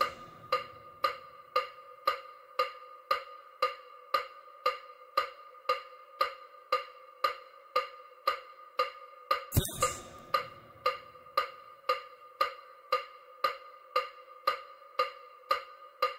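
Electronic bilateral-stimulation tick for EMDR: a short pitched click, like a wood block, repeating evenly about twice a second. A louder burst of noise cuts in once, about nine and a half seconds in.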